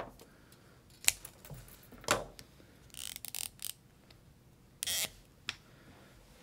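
Thin copper magnet wire being snipped with small cutters and handled: two sharp clicks about one and two seconds in, then a few short scratchy rustles and a small click near the end.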